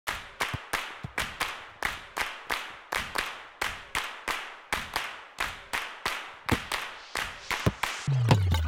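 A rapid, uneven run of sharp claps, about three or four a second, each fading quickly in a short echo.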